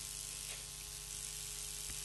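Faint steady electrical hum with background hiss: the noise floor of a radio broadcast recording during a pause in speech.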